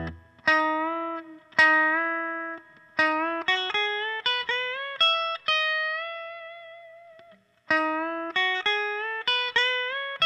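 Fender Custom Shop Wildwood 10 1962 Telecaster Custom electric guitar playing a pedal-steel-style lick in E. Plucked double stops are pushed up a half step or a whole step with string bends, and a held note carries vibrato. The lick breaks off for a moment about seven and a half seconds in, then starts over.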